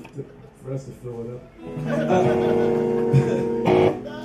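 An electric guitar through an amp strums a chord about two seconds in and lets it ring steadily, then gives one short, sharp strum just before the end.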